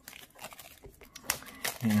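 Plastic shrink-wrap on a small cardboard card box crinkling in scattered small crackles as it is cut and pulled open.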